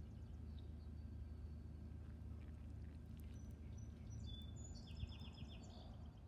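Water from a garden hose running steadily into the soil of a potted plant to soak it: a faint, even pour. A few short, high bird chirps come in past the middle.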